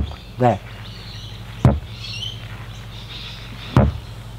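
Three short, sharp knocks about two seconds apart: a golf club striking the practice hitting mat during repeated demonstration swings. Birds chirp faintly in between.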